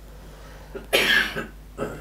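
A man coughs once, briefly, about a second in, during a pause in his talk.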